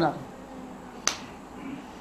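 A man's finger snap, a single sharp click about a second in, following a short spoken word at the very start.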